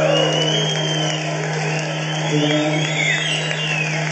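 Audience whistling after the music stops, with long rising-and-falling whistles over a general crowd noise and a steady low hum.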